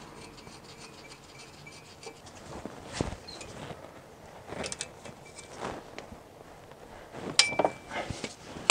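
A ratchet wrench clicking in short runs, with a few metal clinks, as a plug is screwed back into a BMW X5's differential after an oil fill. The sharpest clink, with a brief ring, comes near the end.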